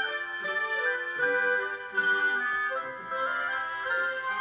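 Light instrumental background music, a melody of held notes moving from one to the next every half second or so.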